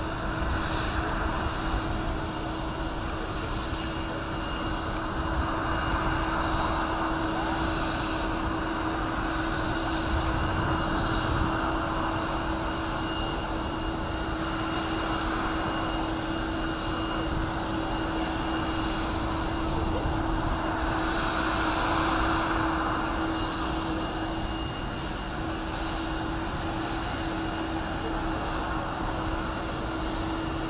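Jet aircraft engines running steadily at idle on the ramp: a continuous rushing roar with a steady low hum and several high whining tones held throughout, swelling slightly now and then.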